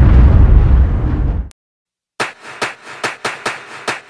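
A deep boom sound effect that fades out over about a second and a half. After a short silence comes a run of sharp taps, about four a second.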